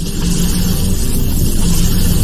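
Sound effect for an animated lightning logo intro: a deep rumbling roar that starts abruptly out of silence and swells in loudness.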